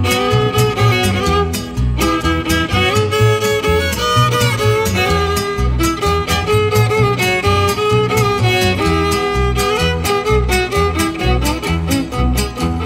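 Instrumental opening of a sierreño-style Mexican corrido: a fiddle plays the lead melody over acoustic guitar and a steady upright bass beat.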